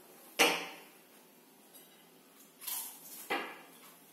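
Sharp knocks: a loud one about half a second in that fades over about half a second, then a brief rustle and a second, softer knock a little after three seconds in.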